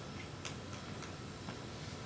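Quiet room tone with a few faint ticks, one clearer about half a second in.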